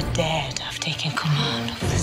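A whispered line of dialogue over dark orchestral trailer music.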